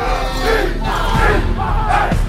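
A group of helmeted football players in a huddle shouting and yelling together, several voices overlapping in short, repeated hollers.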